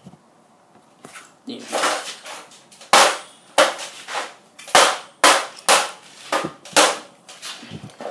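A Toshiba DVD player's dented metal case being struck again and again with a metal bar: about eight sharp cracks, half a second to a second apart, beginning about three seconds in.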